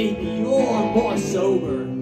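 Live music: a guitar playing on stage, with a melody line whose pitch bends up and down.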